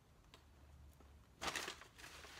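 Quiet room with a few faint small clicks, then a short burst of paper crinkling about one and a half seconds in as a paper takeout bag is grabbed.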